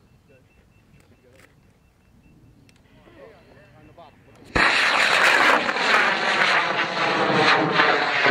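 An M-class solid rocket motor (M1939) igniting and launching a large high-power rocket: an abrupt, loud roar about halfway through that holds steady for about four seconds, its tone sweeping slowly downward as the rocket climbs away.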